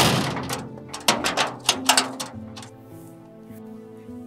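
Heavy steel gate clanging shut, its ringing dying away, followed by a few sharp metal rattles and clacks as it is latched and locked, about one and two seconds in. Background music with held notes plays underneath.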